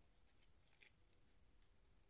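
Near silence, with a few faint light ticks from a soft brush sweeping loose potting soil off a rope-woven plant pot.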